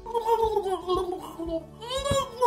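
A woman's voice making gurgling, gargling drowning noises: wavering, warbling vocal sounds that act out someone going under water.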